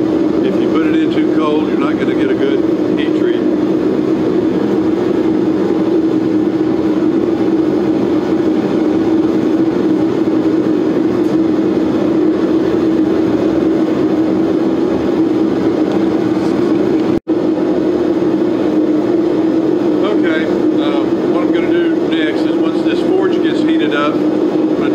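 Propane-fired knife forge burner running with a steady rushing noise and a low hum through it. The sound cuts out for an instant about seventeen seconds in.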